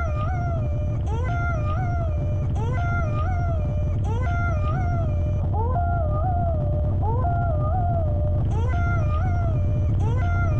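Live electronic music from a sampler and mixer: a looped phrase of gliding, howl-like pitched tones repeats about once a second over a steady low drone. A high bright layer drops out about halfway through and comes back near the end.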